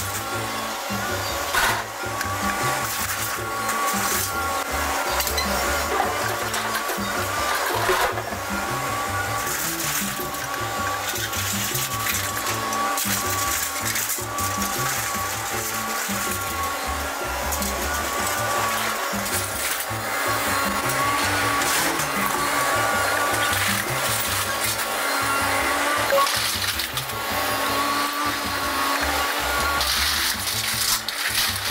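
A Hitachi hydraulic excavator's engine and hydraulics running steadily as its grapple loads scrap steel, with a few sharp clanks of metal. Background music plays over it.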